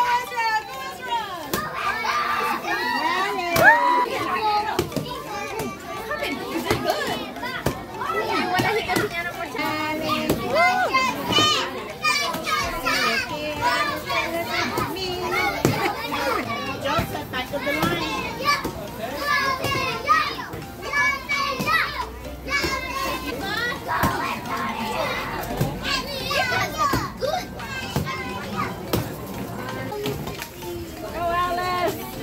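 A crowd of children shouting and calling out over one another, with adult voices mixed in, and sharp knocks scattered throughout as a stick strikes a papier-mâché piñata.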